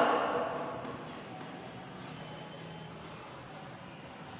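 A woman's voice tailing off in a reverberant classroom during the first second, then steady quiet room noise with no distinct events.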